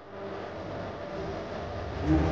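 Steady outdoor background noise: a low rumble with a hiss over it and no clear single event.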